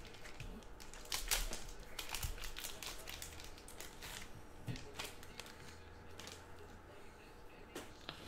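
A foil trading-card pack wrapper being torn open and crinkled by hand, with the cards and their hard plastic holders handled: a run of crinkles and clicks, busiest in the first few seconds and sparser after.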